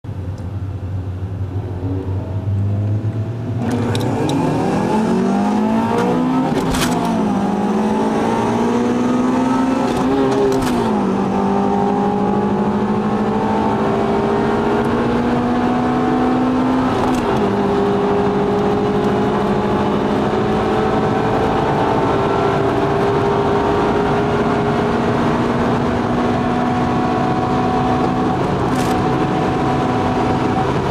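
A car engine heard from inside the cabin idles, then accelerates hard through the gears. Its pitch climbs and falls back at three upshifts within the first seventeen seconds or so, then holds high at speed and creeps slowly upward over road noise.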